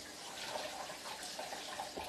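Kitchen faucet running water steadily, with a faint splash as something is rinsed under it.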